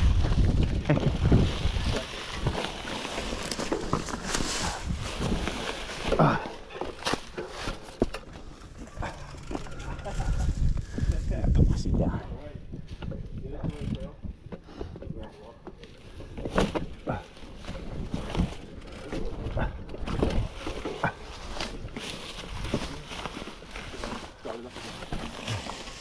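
Mountain bike rolling over a rocky, leaf-covered trail: tyres crunching through leaves and over rock, with frequent clicks and rattles from the bike and a low rumble of wind on the microphone. A few short vocal sounds from a rider break in about a second in, around six seconds and again in the middle.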